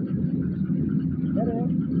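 A clay brick-making machine running with a steady low drone.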